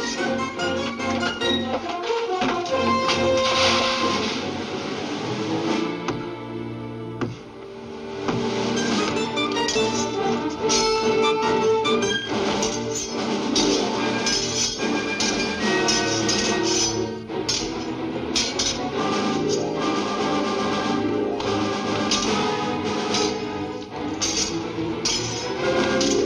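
Orchestral film score with brass playing busily, dipping briefly about seven seconds in.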